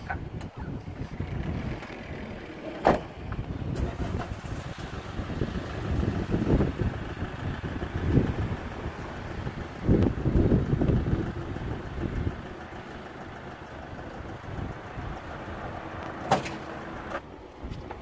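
A Fiat Ducato camper van's sliding side door bangs shut about three seconds in, then its engine runs with a steady low rumble that swells a few times as the van gets under way.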